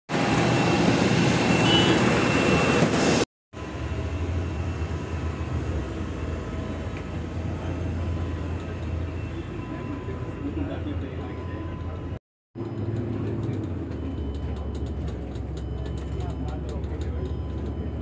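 Loud, even cabin noise of an airliner standing at the gate for about three seconds. After a cut, the steady low rumble of an airport apron bus driving across the tarmac, broken by a second brief cut.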